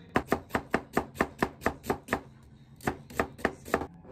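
Knife slicing an onion on a cutting board: a quick, even run of about ten sharp chops, a short pause, then four more near the end.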